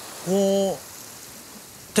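A man's drawn-out filler "uh" about a quarter second in, over a steady wash of sea surf on a rocky shore.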